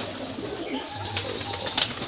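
Domestic pigeons cooing: low coos at the start and again about a second in, with a few light clicks among them.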